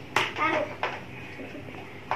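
Plastic lid being put onto a plastic food container: a sharp click just after the start and another a little before the middle, with a brief child's vocal sound between them.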